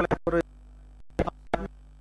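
A voice speaking in short, separate syllables with brief pauses between them, over a steady low hum.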